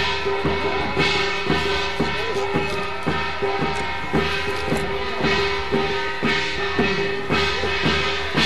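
Music with drums beating about twice a second under a long held tone.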